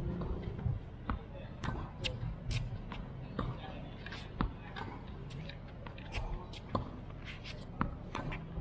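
Tennis balls being struck by rackets and bouncing on a hard court during a practice rally: a series of short, sharp pops and knocks at irregular intervals.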